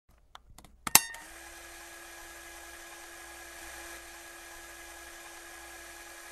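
Sound effect of a neon sign switching on: a few faint clicks, then a sharp crackle about a second in, followed by a steady electrical buzz.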